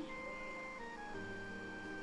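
Background film score: soft, sustained synthesizer notes held and changing pitch every second or so, with a brief soft thump at the very start.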